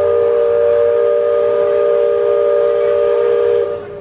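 Steam whistle of the Liberty Belle sternwheel riverboat blowing one long, steady blast of several tones sounding together, cutting off shortly before the end.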